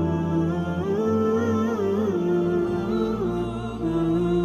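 Background music: a slow, wordless hummed vocal melody with gliding pitch steps over a steady low drone.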